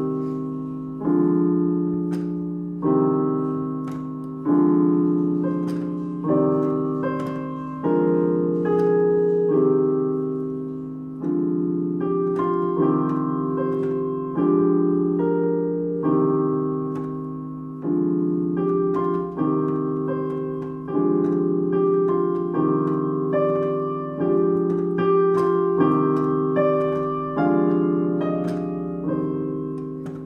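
Piano played slowly: the left hand rocks back and forth between C minor and D diminished chords, a two-chord vamp, each chord struck and left to ring and fade. Over it the right hand improvises a simple melody from the C natural minor scale.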